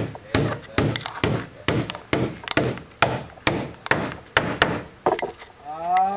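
Hammer blows on wooden column formwork, a steady series of about two sharp knocks a second that stops about five seconds in.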